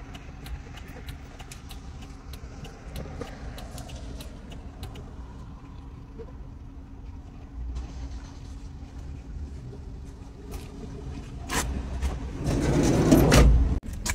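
A vehicle engine idling with a steady low hum, heard through an open door along with street traffic. In the last couple of seconds there are louder rustling and handling noises close to the microphone.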